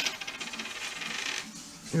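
Small metal gold rings being handled on a wooden table: a sharp click as one is set down, then a rapid clinking rattle of metal for about a second and a half.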